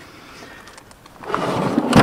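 A carpet-faced wooden storage drawer being pushed shut: a sliding rumble rises over the second half and ends in a knock as the drawer closes.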